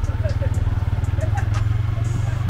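A motor vehicle engine idling close by: a steady low rumble of rapid, even pulses.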